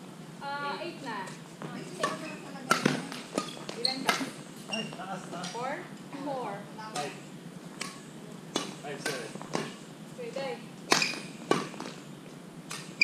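People's voices talking, with scattered sharp clicks and knocks throughout.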